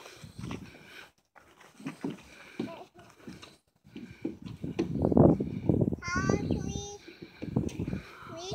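Irregular low thumps and rumble, loudest in the middle, with a toddler's brief high babbled call about six seconds in.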